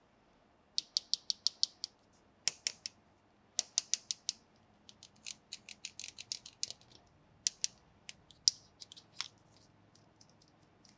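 Small plastic toy parts clicking in quick runs, several light clicks a second, with short pauses between the runs.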